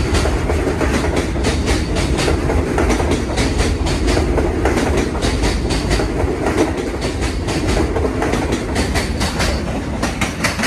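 R211 subway train pulling out of a station and passing close by. Its wheels click rapidly and unevenly over the rail joints above a steady low rumble.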